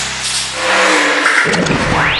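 Whoosh sound effect of a TV graphic transition: a loud rush of noise that swells about a second in and fades, with another rising sweep starting at the very end.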